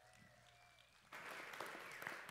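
Congregation applauding, coming in quietly about a second in after a near-silent pause.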